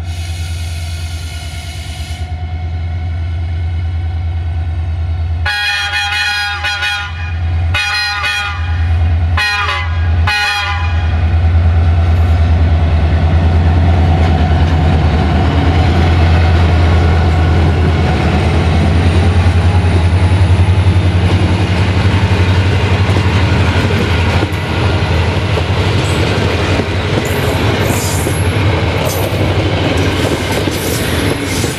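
A locomotive's new horns sound in four blasts about six to eleven seconds in, the first the longest, over the steady low drone of its engine. The train then passes close by, its passenger coaches' wheels rolling over the rails, with sharp high squeals near the end.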